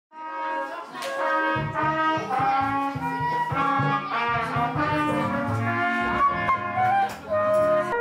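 Several brass instruments, trumpets and trombones, sounding overlapping held notes at different pitches, out of step with one another: a band warming up and tuning before rehearsal. Low notes join about one and a half seconds in.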